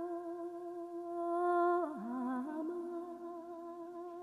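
A voice humming one long, steady held note. About two seconds in it dips in pitch and slides back up, then holds the note again.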